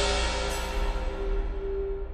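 Electronic music from a Mutable Instruments Eurorack modular synthesizer patch. A dense, hissy layer slowly darkens as it fades, over a held mid-pitched tone and a steady low bass, with a short high bell-like ping about half a second in.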